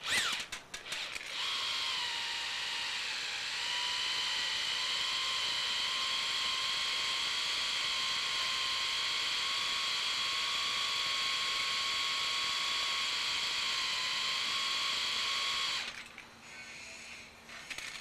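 Variable-speed electric drill spinning slowly, twisting a length of wire clamped at its far end to straighten it. A few clicks at the start, then a steady motor whine that settles in pitch about three seconds in and cuts off about two seconds before the end.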